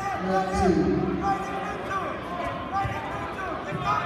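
Voices of spectators and coaches calling out, echoing in a gymnasium, with a few dull thumps.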